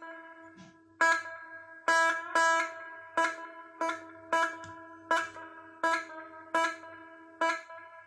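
The same electric guitar note is plucked over and over, about once every three-quarters of a second, through a Spectre Verb reverb pedal and a small Marshall amp. Each note has a tail that rings on and decays, the pedal's delayed-onset reverb, which is being set to come in later.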